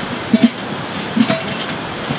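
Enamelled steel lid of a kettle charcoal grill clanking twice against the bowl as it is set in place, each knock ringing briefly, over a steady rushing background noise.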